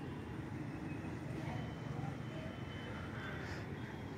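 Quiet outdoor street ambience: a steady low rumble, with a few faint bird calls near the middle.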